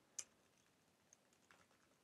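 Faint computer keyboard typing: a soft key click just after the start, then a few fainter clicks later on.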